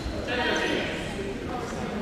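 Indistinct voices in a large sports hall with a badminton match going on, one voice louder for a moment about half a second in, over steady hall noise.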